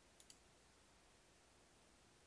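Two faint clicks about a tenth of a second apart, a quarter second in: a computer mouse button clicked, over near silence.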